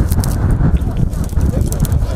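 Several garden hoes chopping into dry, stony soil: a quick, irregular run of sharp strikes and scrapes as holes are dug for planting.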